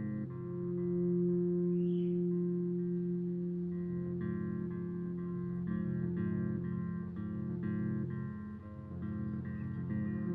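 Electric bass guitar played through effects pedals and an amp: short plucked phrases repeat in an even layered pattern, under a long held low note that runs from about half a second in to about seven seconds in.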